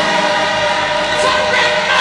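A gospel choir singing, the voices holding long sustained notes at a steady, full level.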